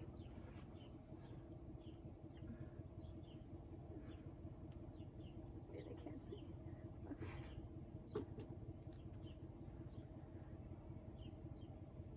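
Quiet outdoor ambience: a faint steady low rumble with a few faint high chirps scattered through it, and a single soft click about eight seconds in.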